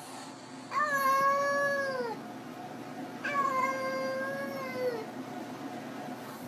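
A cat giving two long, drawn-out meows, each about a second and a half, holding a steady pitch and dropping at the end.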